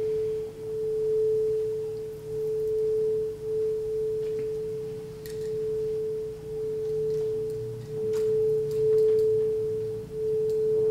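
A quartz crystal singing bowl sounding one sustained, nearly pure tone that pulses slowly louder and softer, with a faint low hum beneath it.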